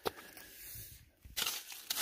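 A single knock at the start, then from just past halfway a rock hammer digging into gravelly soil and small stones, several short scrapes and knocks.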